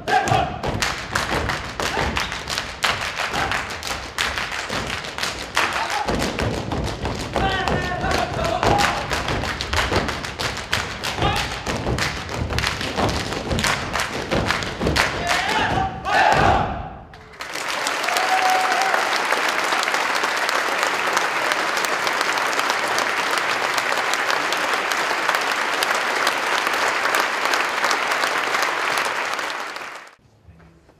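Hungarian folk dancers stamping and slapping their boots in rapid, dense beats, with voices calling out now and then; this stops about seventeen seconds in. Then the audience applauds steadily until it cuts off at the very end.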